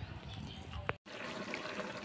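Faint room noise with a short click, then, after a sudden cut about a second in, blended chilli-and-shallot spice paste simmering in a wok with a faint bubbling.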